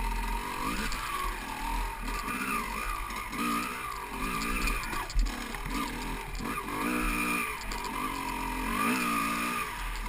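Off-road motorcycle engine revving up and down over and over, the throttle opened and closed about once a second as the bike picks its way along a wooded trail.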